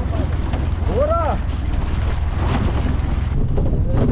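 Wind buffeting the microphone with a heavy, steady low rumble, and one short vocal call about a second in.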